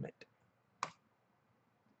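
A single computer mouse click about a second in, short and sharp.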